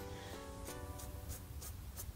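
Quiet background music: a plucked string instrument playing a run of single notes.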